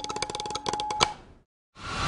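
Rapid stick strokes on a marching snare drum, ending on a loud accent about a second in and ringing out briefly. After a short silence, a steady rushing noise begins near the end.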